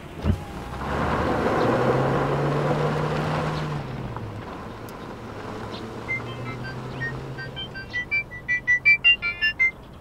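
A short thump, then a car engine and tyre noise swell and fade as the car drives off. After that a mobile phone ringtone plays a quick melody of short, high beeping notes that grows louder over the last few seconds.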